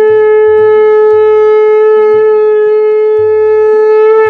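Conch shell (shankha) blown in one long, steady note.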